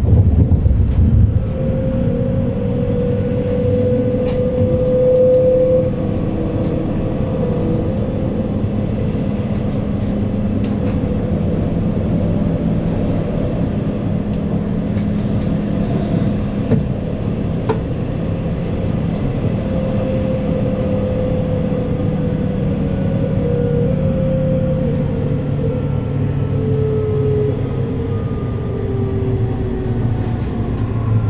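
Berlin S-Bahn class 484 electric multiple unit heard from inside the carriage while running: a steady rumble of wheels on rail with the whine of the electric drive, a few sharp clicks from the track, and the whine falling in pitch near the end.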